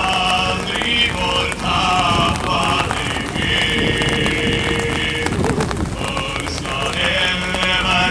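A group of men's voices chanting together in phrases, with one long held note in the middle.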